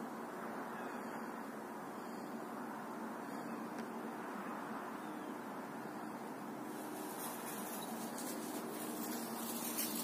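Steady outdoor background noise, with crackling rustles starting about two-thirds of the way through.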